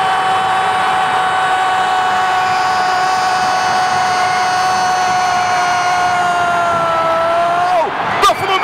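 A football commentator's long, high, held shout of "gol", over steady crowd noise. The pitch falls and the shout breaks off near the end.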